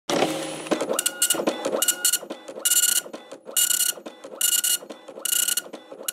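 Dot-matrix printer printing: a short whir at the start, then six even buzzing passes of the print head, each about a third of a second long and just under a second apart.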